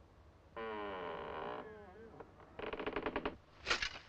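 Heavy studded wooden castle door creaking open on its iron hinges: one long creak that slowly drops in pitch, then a shorter, rapidly stuttering creak.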